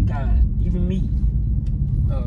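Steady low rumble of a car's cabin on the move, with a few spoken words in the first second.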